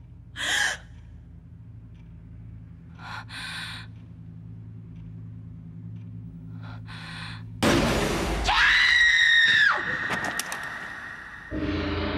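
A woman's sobbing gasps, three short breaths spaced a few seconds apart, then a loud, high scream held for about two seconds. Near the end a low, ominous music drone comes in.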